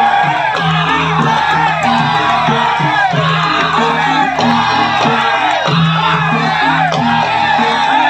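Live Javanese gamelan music: bonang kettle gongs and other percussion playing a repeating pattern, with voices shouting and singing over it.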